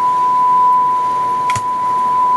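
A steady 1 kHz test tone played back from a chrome cassette on a JVC KD-A5 tape deck, one unbroken high beep. The playback signal is too hot, over the +3 dB maximum, with the VU needles in the red.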